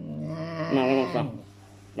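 An elderly woman's voice calling out in one long, quavering cry lasting just over a second.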